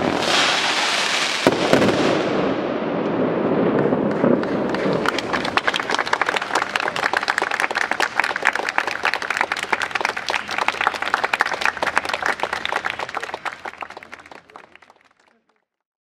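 Fireworks finale: a couple of sharp bangs and the rush of a burst, then dense rapid crackling from crackle-effect stars that thins and fades out near the end.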